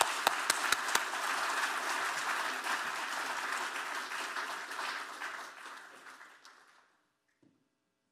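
Audience applauding, with a few sharp single claps, about four a second, standing out at first; the applause dies away and stops about seven seconds in.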